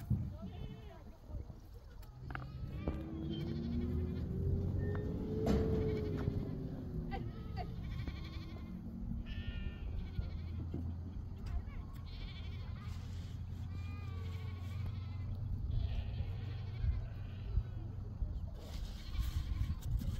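Sheep and goats bleating again and again in the background, short wavering calls scattered through the whole stretch, over a steady low drone.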